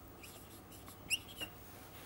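Marker pen squeaking in short strokes against the board while drawing, with a sharp rising squeak about a second in and a few faint taps.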